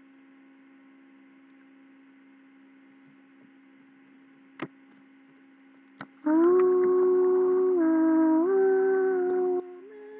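A man humming a slow wordless tune in long held notes that step up and down in pitch. The humming starts about six seconds in, after a faint steady electrical hum and two small clicks, and breaks off shortly before the end.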